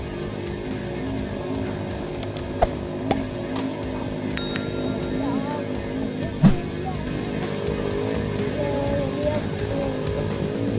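Background music with steady sustained tones, and a brief high ringing tone about four and a half seconds in.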